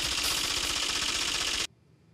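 A rapid, dense clatter of a typing-style sound effect as on-screen caption text is typed out. It cuts off suddenly near the end.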